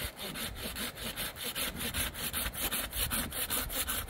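Hand saw cutting through a dry tree branch, in quick, even back-and-forth strokes of about six a second.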